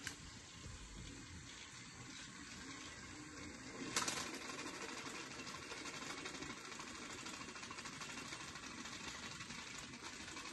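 Small battery motors of toy train engines whirring with a fast rattling tick as the trains run along plastic track. A sharp click comes about four seconds in, after which the running sound is a little louder.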